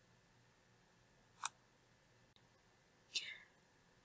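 Near silence: quiet room tone, broken by two faint, brief sounds, one about one and a half seconds in and one just after three seconds.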